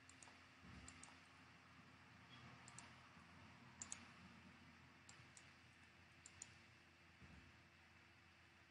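Faint computer mouse clicks, mostly in quick pairs, coming every second or so over a low steady hiss.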